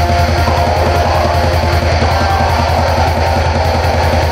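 Black metal music: distorted electric guitars over rapid, steady drumming.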